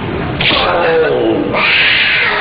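A wild animal's roar used as a film sound effect for a bear: a short roar about half a second in, then a longer, louder one from about a second and a half.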